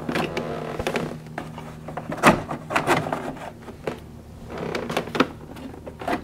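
Plastic speaker grill panel being pried and pulled off a motorcycle's inner fairing: a run of sharp plastic clicks and creaks as its clips let go, the loudest about two seconds in.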